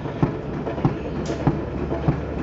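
Regular light clicks or knocks, about three a second, over a steady low rumble.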